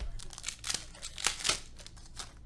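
Foil wrapper of a trading card pack crinkling as it is handled, in a run of short, sharp crackles that peak about a second and a half in.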